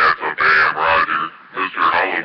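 A distorted, unintelligible voice coming in over a two-way radio, in quick choppy bursts.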